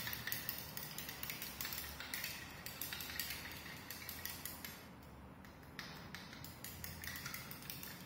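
A stirring rod clinking against the inside of a small glass beaker as copper sulphate is stirred into water to dissolve it: a quick run of light clicks that thins out around the middle and picks up again.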